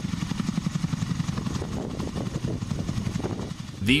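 Boeing CH-47 Chinook tandem-rotor helicopter on the ground, its rotors turning with a fast, even beat over a steady turbine hiss.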